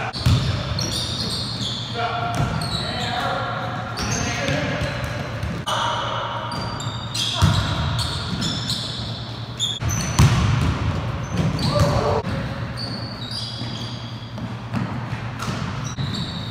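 Pickup basketball on a hardwood gym floor: the ball bouncing with sharp thumps, sneakers squeaking in short high chirps, and players' voices calling out, all echoing in the hall.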